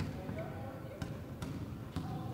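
A ball bouncing on the floor of a sports hall: a few separate sharp knocks, unevenly spaced, over a low steady background.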